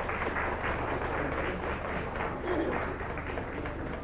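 Audience applauding, a dense steady patter of many hands clapping.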